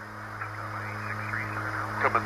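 A steady low hum with a few even overtones, and faint wavering chatter over it from about half a second in.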